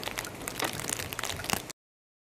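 Dense, continuous crackling patter of falling wet snow, which cuts off abruptly near the end.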